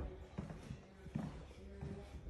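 A few footsteps on a hard floor, low thuds about half a second apart.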